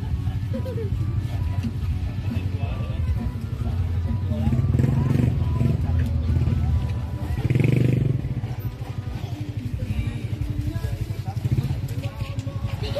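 A small engine running steadily nearby with an even low pulse, a little louder about halfway through, under background voices and music.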